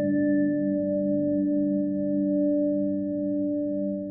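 A single bell-like chime, struck just before and ringing on as several steady tones that slowly fade, with a slow wobble in its lowest note.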